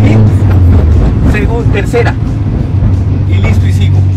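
A manual car's engine heard from inside the cabin, pulling hard at about 3000 rpm. About a third of a second in its steady hum breaks off as the clutch goes in for an upshift to third. Near the end it settles back into a steady, lower-revving hum.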